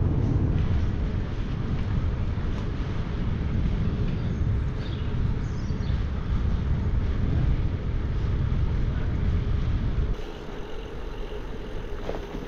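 Wind buffeting the handlebar camera's microphone and road rush while a bicycle is ridden along town streets. It drops to a quieter rolling noise about ten seconds in.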